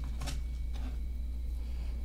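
Hands handling small objects, lifting a little metal keychain screwdriver tool from its box among cloth pouches: a few faint rustles and light clicks over a steady low hum.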